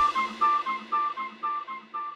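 Background music ending: a repeating figure of short pitched notes fading out.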